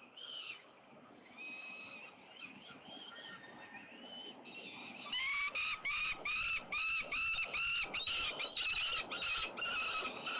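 Peregrine falcons calling: soft, scattered high squealing calls at first. From about halfway through comes a loud run of harsh, repeated calls, about three a second, running almost together for a moment near the end as another falcon flies in to the ledge.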